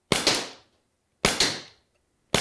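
Two sharp metallic snaps about a second apart, each with a short ringing tail: the C96 BB pistol's single-action trigger breaking and its die-cast hammer falling as the trigger is pulled with a trigger-pull gauge.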